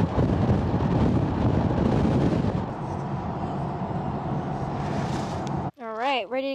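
Wind buffeting the microphone and road noise from a moving car: a dense, low rush, a little quieter after the first couple of seconds, that cuts off suddenly near the end.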